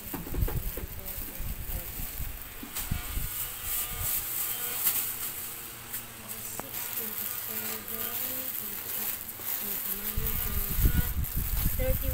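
Indistinct background voices of people talking in a shop, with low thumps and rumbles of the phone being handled near the start and again near the end.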